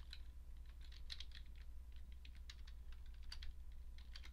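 Computer keyboard being typed on: a faint, irregular string of light key clicks.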